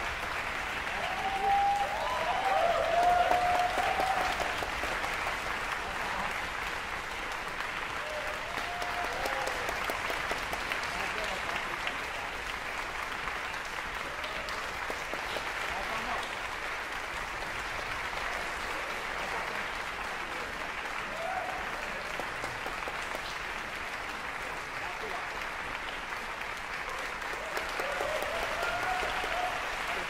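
Concert hall audience applauding steadily, with a few voices calling out over the clapping, loudest a few seconds in and again near the end.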